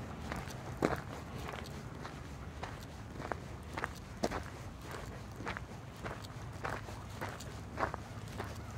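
Footsteps of a person walking at an easy, even pace, a step roughly every half second, over a low steady rumble.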